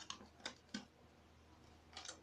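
Near silence with a few faint light clicks in the first second, as small toys and packaging are handled.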